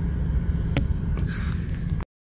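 Low, steady rumble of a car creeping along, heard from inside the cabin, with a single sharp click about a second in. The sound cuts off suddenly at the end.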